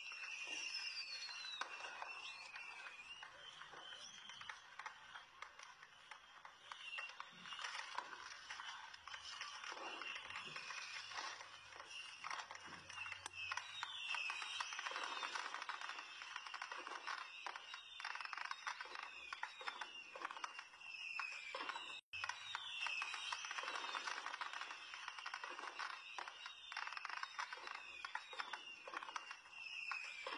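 Faint indistinct voices in an open-fronted shop, with background ambience.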